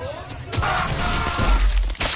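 Harsh, noisy burst of VHS tape static and glitch distortion from a film soundtrack, starting about half a second in, with a heavy deep rumble near the end: the sound of the tape segment breaking up.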